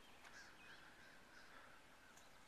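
Near silence: faint outdoor ambience with a few faint, high bird chirps early on.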